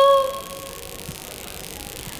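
A girl's unaccompanied solo voice holding a long, steady note of a sholawat (devotional song), which fades out within the first half second. The rest is a pause with only faint room noise.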